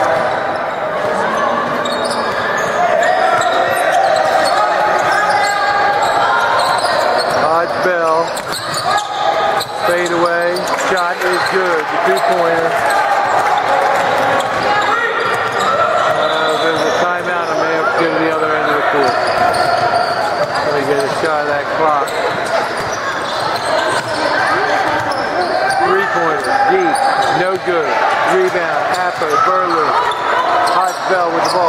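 A basketball being dribbled on a hardwood gym floor during a game, with the voices of players and onlookers carrying through the echoing hall.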